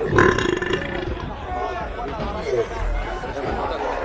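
Several voices chattering over one another, with a loud, short vocal outburst just after the start.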